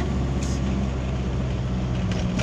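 Steady engine hum and road noise inside the cabin of a moving vehicle.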